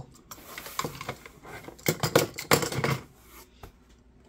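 Plastic snap-blade utility knives being set down among tools in a cardboard box: a series of light clicks and knocks with some rustling, busiest about two to three seconds in.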